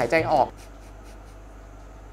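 A man's voice stops about half a second in, followed by a steady faint hiss with no distinct events.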